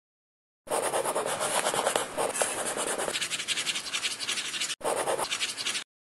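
Scribbling sound effect: a pen scratching rapidly on paper in quick strokes, with a brief break near the end.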